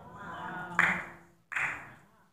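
Two sharp hand claps about three quarters of a second apart, each ringing briefly in a large room, after a faint low murmur.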